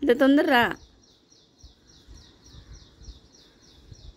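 A dog gives a short, loud 'talking' vocalization with a wavering, sliding pitch, under a second long, a greeting given on cue. After it a faint high chirping trill, about seven chirps a second, runs through the rest.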